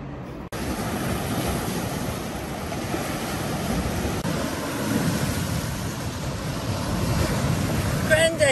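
Sea waves breaking and washing over a rocky shore, with wind rumbling on the microphone. The sound cuts in abruptly about half a second in and then runs on steadily.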